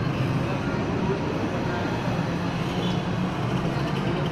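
Steady low background hum with faint murmur of voices from people standing close by.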